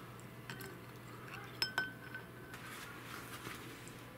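Light clinks on a glass jar: a faint one about half a second in, then two sharper ones in quick succession at about a second and a half, leaving a brief high ring, over faint room noise.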